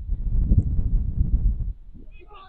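Wind buffeting the microphone: a loud, gusty low rumble that dies away near the end.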